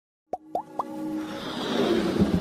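Three quick rising 'bloop' pops in a row, then a whoosh that swells louder toward the end: the sound effects of an animated logo intro.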